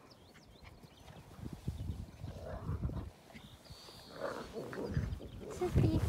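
Border collie puppies making small whines and grunts, with a thin high whine about four seconds in.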